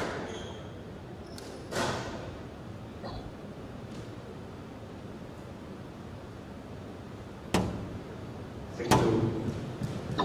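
Squash ball being struck and hitting the walls of a glass-walled court: a few separate sharp knocks with a short echo, the clearest about two seconds in and twice near the end, over quiet hall ambience.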